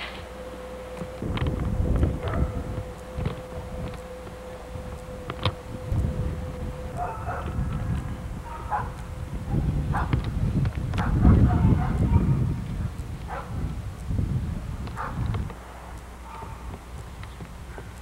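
Handling and walking noise on a VHS camcorder's microphone as it is carried around a parked car: irregular low rumbles and soft thumps, loudest about eleven to twelve seconds in.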